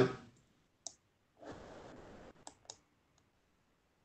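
Faint clicking at a computer as the call is closed: four short, sharp clicks spread over about three seconds, with a brief soft rustle between the first and the second.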